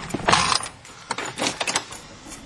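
Small mechanical rattling and clicking from the driver handling the car's fittings at the steering column: a short rasp about a third of a second in, then a quick run of light clicks.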